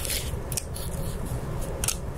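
Light handling noise as a CPU carrier clip holding a processor is pressed onto a server heatsink: faint rubbing, with a small click about half a second in and another near the end as it seats.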